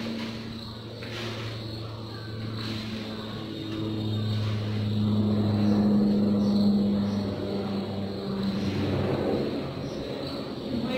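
Low engine hum of a passing motor vehicle, swelling to its loudest in the middle and fading again, with faint scraping as gloved hands mix soil, compost and sand in a shallow tray.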